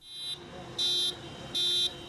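An emergency vehicle's electronic siren gives three short, high, steady beeps, about one every three-quarters of a second, over street noise.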